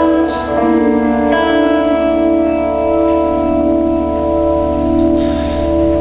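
Live rock band music: electric guitar and bass hold slow, ringing chords that change every second or so, with no singing yet.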